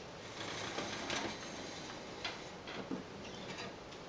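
Handling noise from a gooseneck reading lamp being adjusted by hand: a handful of faint, irregular clicks and rustles.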